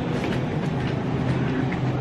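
Steady low hum and even rumbling noise of a grocery store aisle beside refrigerated display cases, with faint scattered ticks.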